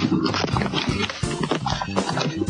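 Laughter from two girls heard through a webcam video call, over background music.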